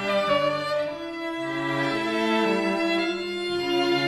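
A string quartet playing classical music: violins over a cello line, in long held notes whose chord shifts about once a second.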